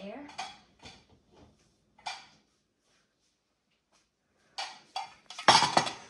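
A few faint knocks, then a cluster of clattering knocks near the end as a clear rectangular container holding two dessert cups is set down on a granite countertop, the cups rattling against the container.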